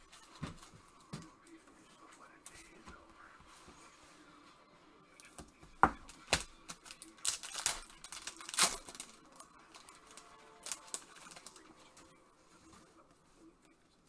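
A trading-card pack wrapper being torn open and crinkled by gloved hands, with a cluster of sharp crackles and rips about halfway through and light handling clicks around it.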